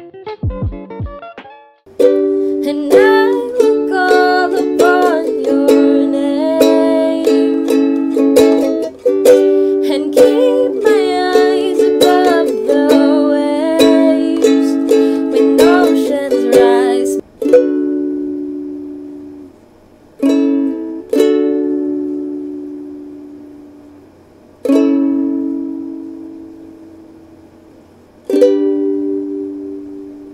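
Ukulele strummed steadily with a woman singing along for about fifteen seconds. After that, single chords are struck once each, several seconds apart, and left to ring out and fade.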